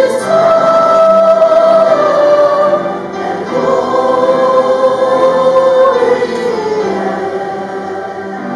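A congregation singing a hymn together, in long held notes that step down in pitch, the lowest about six to seven seconds in.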